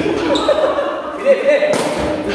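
Players' voices calling out, echoing in a large sports hall, with one sharp smack near the end.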